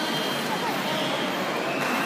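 Steady crowd hubbub: many spectators talking at once, blending into a continuous background murmur.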